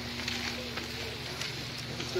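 A steady low hum with a faint voice and faint footsteps on dirt.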